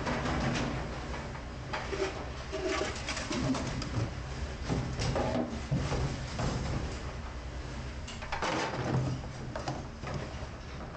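Stainless steel pans knocking and water sloshing in a sink of soapy water as pans are washed, over a steady low hum of kitchen machinery. A few short low pitched tones come in the first half, and the loudest clatter comes near the end.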